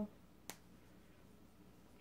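A single sharp click about half a second in, against near silence.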